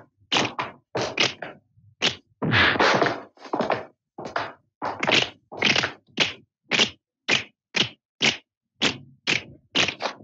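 Film fight sound effects: a run of punch and kick whacks, about two a second, each short and separated by silence, with one longer, heavier hit near the start.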